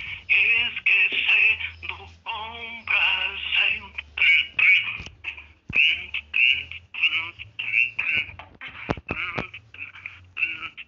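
High-pitched voices chattering and calling in quick short bursts, with no clear words, and two sharp clicks about five and nine seconds in.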